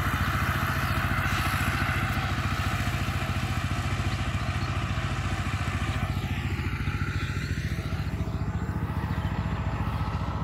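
Small single-cylinder engine of a two-wheel power tiller ploughing a field, running steadily with a fast, even chug.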